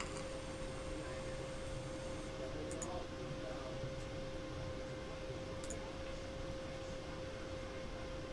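Quiet room tone, a steady hum and hiss, with two faint computer-mouse clicks, about three and six seconds in.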